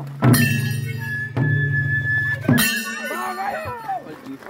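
Madal, the Nepali two-headed hand drum, struck in a slow beat: three strokes about a second apart, each leaving a low ringing tone, with voices calling over it near the end.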